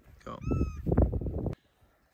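A short, high, arching animal call about a third of a second in, over loud low rumbling noise of wind on the microphone. All of it cuts off abruptly a little past halfway.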